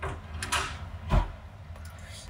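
A few brief knocks and scrapes, the last with a soft thump a little over a second in: dishes or utensils being handled.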